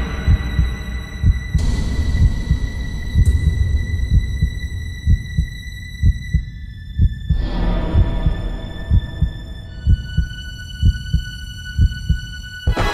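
Heartbeat sound effect: slow, steady low thumps repeating throughout, over a sustained high synth drone whose notes shift a few times. This is suspense scoring for a tense moment.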